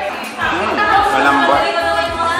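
Voices, speech-like chatter that gets louder about half a second in. No sound from the eating itself stands out.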